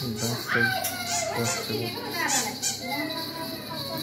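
Children's high-pitched voices chattering and calling while they play.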